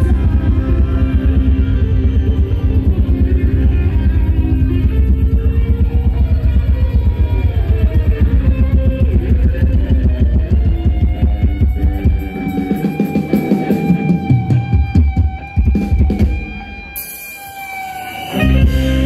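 Live band playing Thai ramwong dance music with guitar and a steady heavy bass-drum beat. About twelve seconds in the beat stops, leaving long held notes, and the music quietens near the end.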